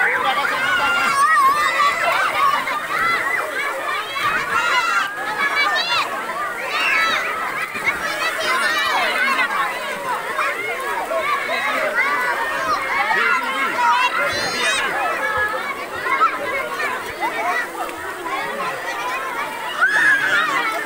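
A crowd of children chattering and shouting all at once, a steady overlapping babble of voices with no single speaker standing out.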